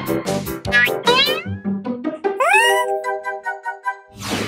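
Bouncy children's song music with a cartoon cat meowing over it twice: once about a second in, and again about halfway through, the second meow rising and then held for about a second.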